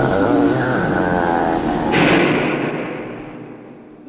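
Film soundtrack of a troll attack: a creature's wavering snarling cries over a struggle, then a loud final hit about two seconds in that fades away.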